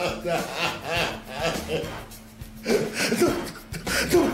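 A man groaning and gasping in pain, in short strained bursts that break off for a moment about two seconds in and then resume.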